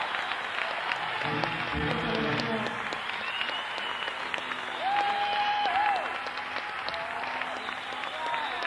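Concert audience applauding between songs, heard on an audience cassette recording with a dull, muffled top end. A few held notes and whistle-like tones sound over the clapping, with a short run of low notes about a second and a half in.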